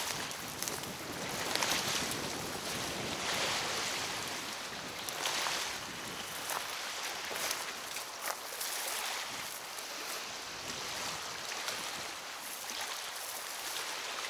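Wind-driven waves from a choppy river washing against the bank, mixed with wind, the hiss swelling and easing every second or two. A few small clicks now and then.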